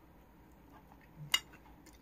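A metal spoon clinks once against a bowl, a short sharp clink with a brief high ring, a little over a second in, amid near-quiet room tone.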